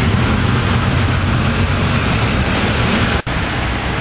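Steady, loud rushing noise of rain and wind on the camera microphone, with a deep rumble underneath; it breaks off for an instant about three seconds in.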